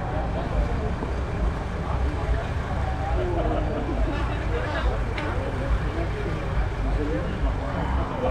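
Several people talking at once in the background, overlapping chatter with no single clear voice, over a steady low rumble.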